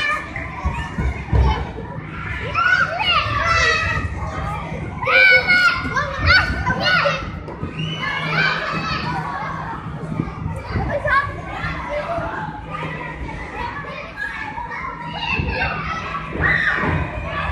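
Many children playing, their high-pitched shouts and calls overlapping throughout, with a steady low hum beneath.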